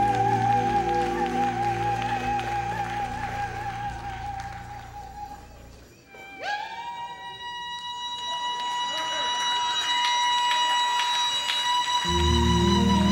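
Church band music. A high held note with vibrato sounds over lower sustained notes and fades away about six seconds in. A new high note then slides up and holds steady with little underneath it.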